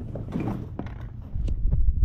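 Handling noise as a drysuit is pulled about to reach the hose inside its leg: scattered light knocks and rustles, with a low rumble of movement that grows louder about halfway through.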